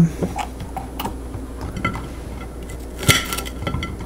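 A kitchen knife and a pepper being handled on a ceramic plate: soft scattered taps and scrapes, then one sharper knock against the plate about three seconds in that rings briefly.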